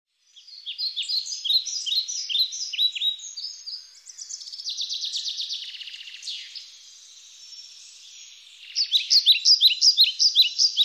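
Birds chirping: many quick, overlapping, downward-sliding chirps, with a denser buzzy trill in the middle and the loudest burst of chirping near the end.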